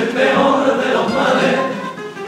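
All-male comparsa choir of the Cádiz carnival singing a pasodoble in part harmony, with the sung phrase tailing off near the end.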